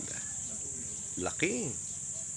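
Steady high-pitched drone of insects, crickets or similar, trilling without a break. About one and a half seconds in, a short hum-like voice sound rises and falls in pitch over it.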